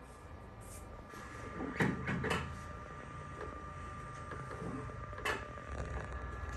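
A few scattered clicks and knocks from X-ray equipment being handled, the sharpest about five seconds in, over a faint steady hum.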